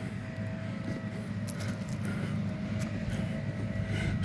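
Steady low rumble of a vehicle's engine and tyres, heard from inside the moving vehicle's cabin.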